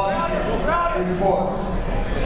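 People's voices talking and calling out in a gym, no clear words, over steady background crowd noise.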